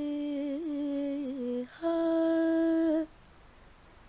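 A woman's voice sings long, wordless held notes. The first note wavers a little and dips in pitch about a second and a half in. After a short break comes a slightly higher, steady note that stops about three seconds in.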